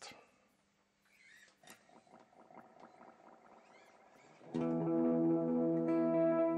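Electric guitar played through effects: after a moment of quiet, faint scattered picked notes, then about four and a half seconds in a loud sustained chord of steady ringing tones sets in and holds.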